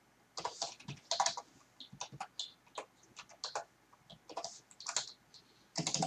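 Typing on a computer keyboard: irregular clusters of keystroke clicks, beginning about half a second in.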